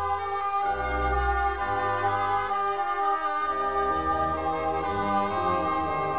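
Baroque chamber orchestra playing an instrumental passage with no voice: two oboes d'amore hold sustained notes over a continuo bass line that moves step by step.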